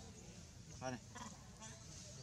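One short call from a macaque about a second in, over faint voices in the background.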